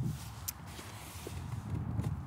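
A pause in the talk: faint outdoor background noise, mostly a low rumble, with one brief click about half a second in.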